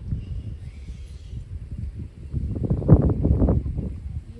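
Wind buffeting the phone's microphone, a gusty low rumble that swells into a stronger gust about three seconds in.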